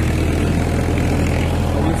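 Farmtrac 45 tractor's diesel engine running steadily under load, driving a Shaktiman rotavator through its PTO shaft as it tills the soil.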